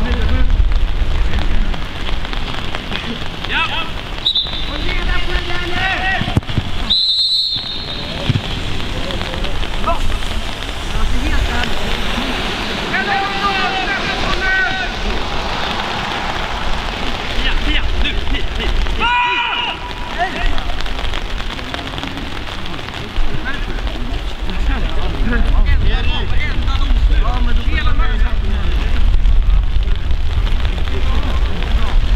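Steady rain falling on an umbrella, with wind rumbling on the microphone and footballers shouting across the pitch now and then.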